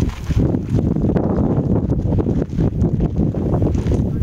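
Wind buffeting the microphone: a loud, uneven low rumble that rises and falls.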